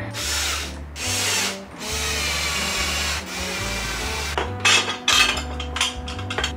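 Power drill/driver driving screws into a sit-stand desk frame in several short runs of whirring, the longest lasting about a second near the middle.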